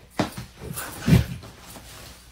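A couple of light pats, then bedding rustling and a heavy low thump about a second in as a person flops down onto another person lying in bed.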